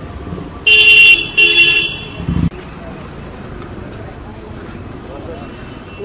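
Two loud, short car-horn honks in quick succession, each about half a second, followed by a dull thump.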